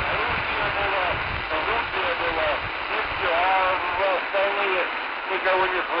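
A voice talking over a shortwave radio receiver tuned to 3130 kHz, thin and band-limited, with steady static hiss underneath.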